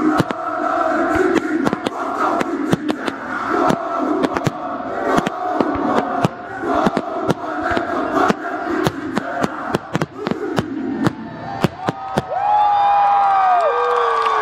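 Aerial fireworks bursting in rapid succession, many sharp bangs and crackles, over a crowd cheering and shouting. About twelve seconds in it gets louder and several whistles sweep down in pitch.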